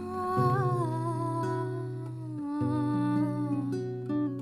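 A woman's wordless voice slides up into one long, wavering held note over plucked acoustic guitar: the opening of a Hindi song.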